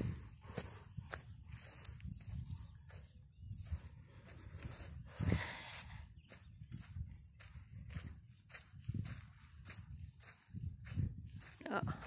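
Footsteps on sand at a walking pace, roughly two steps a second, over a steady low rumble on the phone's microphone.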